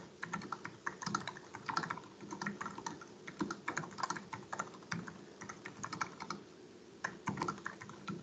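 Typing on a computer keyboard: quick runs of key clicks with brief pauses, a break of about half a second near the end before a last short run.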